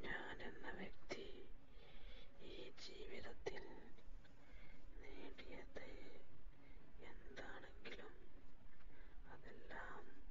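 A person whispering in short breathy phrases, with a few light clicks in between.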